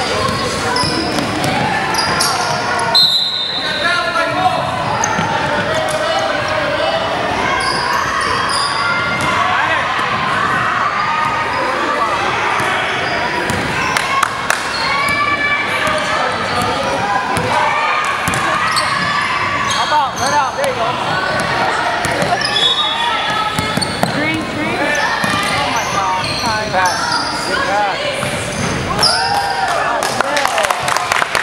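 Youth basketball game in a gymnasium: a basketball bouncing on the hardwood court amid players' and onlookers' voices, echoing in the large hall.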